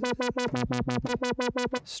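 Ableton Analog software synth playing a held sawtooth note with sub oscillator through a resonant 12 dB low-pass filter, its cutoff modulated by a tempo-synced sixteenth-note LFO: a rapid rhythmic filter pulse of about eight throbs a second. The LFO-to-cutoff modulation is working, giving the pulsing synth line.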